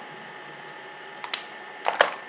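Light clicks of a plastic lipstick tube and cap being handled: two small ticks just past the middle and a sharper click near the end, over faint room hiss.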